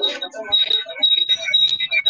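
Indistinct voices over a video call, with a thin high-pitched electronic tone that breaks off and returns several times.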